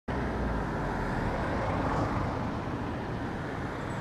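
Road traffic on a city street: motor vehicles, including a minibus, passing with steady engine and tyre noise.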